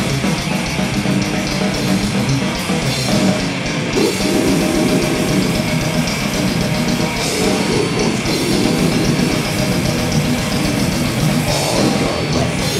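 Death metal band playing live: distorted bass and guitar over a drum kit with cymbals, loud and dense throughout.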